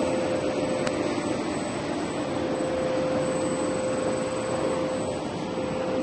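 Vacuum suction unit running steadily with a constant whine, pulling pickled carrots and brine out of a pickling tank through a suction hose.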